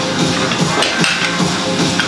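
Background music, with a single knock about halfway through.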